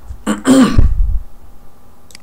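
A man clearing his throat once, a short loud rasp about half a second in.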